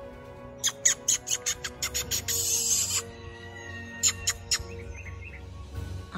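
A squirrel-like chattering call: a run of sharp chirps, about six a second, ending in a harsh buzz, then four more quick chirps about four seconds in. Steady background music underneath.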